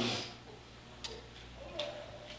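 A man's voice trails off at the start, then a pause of quiet room tone with two faint, short clicks, about a second in and near the end.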